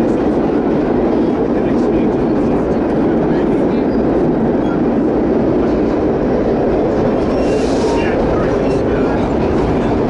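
Vintage R1-9 subway cars running through a tunnel: a steady, loud rumble of wheels on rail and running gear, with a brief hiss about seven and a half seconds in.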